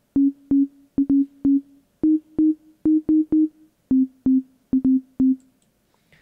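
Basic sine-wave bass preset in the Nexus synth plugin playing back a rhythmic line of short single notes that step between a few pitches, each note starting with a click. Played this high, the line has no bass feel.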